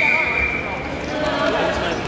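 Voices carrying in a gymnasium, with dull thumps at intervals. A steady high-pitched tone sounds for about the first second.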